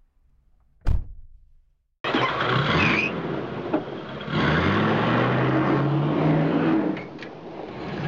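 A single sharp hit, then a loud engine sound that starts abruptly about two seconds in, its pitch rising and holding as it revs.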